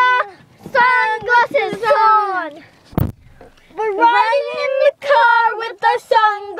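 Two girls singing a made-up tune with long, sliding notes, broken by a single sharp thump about halfway through.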